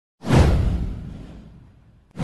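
A swoosh sound effect for an animated intro, with a deep low boom under it: it starts suddenly just after the start, sweeps down in pitch and fades away over about a second and a half.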